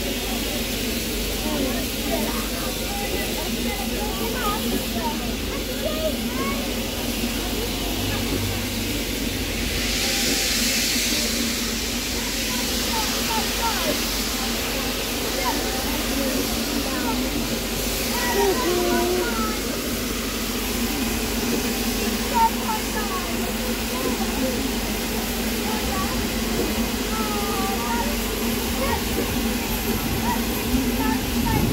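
A4 Pacific steam locomotive 60007 Sir Nigel Gresley standing at the platform, hissing steam, with a stronger burst of hiss about ten seconds in. People chatter around it throughout.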